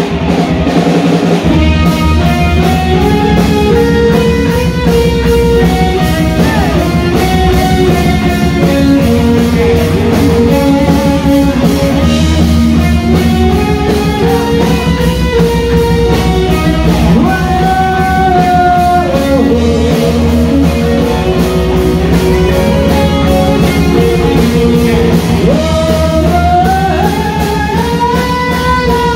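Heavy metal band playing live: distorted electric guitars and a driving drum kit, with a melodic lead line of held, stepping notes over the top.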